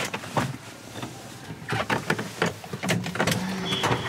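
Street noise heard from inside a parked VW Kombi van, with scattered clicks and knocks, ending with the van's front door being unlatched and pulled open.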